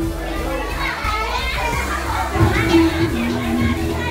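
A crowd of children chattering and shouting over music playing underneath.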